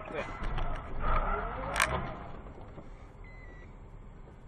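Car running on the road, a steady low rumble, with voices over it. There is a single sharp knock a little under two seconds in.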